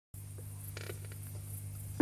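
Quiet room tone: a steady low electrical hum with hiss, and a few faint creaks in the first second.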